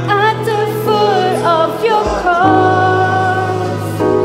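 Worship song: a singer's voice over sustained Korg keyboard chords. The chords change about halfway, and the voice then holds one long note.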